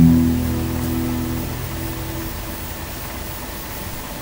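Final acoustic guitar chord ringing out and fading away over about two seconds, leaving only the steady hiss of an old recording.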